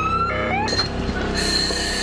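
Emergency vehicle siren wailing: a rising sweep that tops out just after the start, then a second short rise. A steady high tone follows about a second and a half in, over a steady low rumble of street noise.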